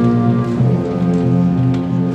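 Concert band of woodwinds and brass playing sustained chords, moving to a new chord about half a second in.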